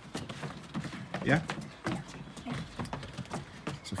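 Irregular light taps and knocks of feet and footballs on wooden decking as two boys roll and stop the balls with their soles.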